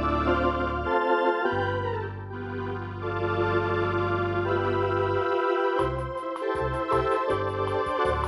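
Eminent 2000 Grand Theatre electronic organ playing sustained chords over long held pedal bass notes. About two seconds before the end, a rhythm with short detached bass notes and a quick ticking beat comes in.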